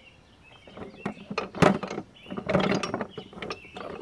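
Wooden-handled hammers clattering and knocking against one another in a plastic bucket as one is rummaged for and pulled out: a quick run of sharp knocks, loudest about a second and a half in.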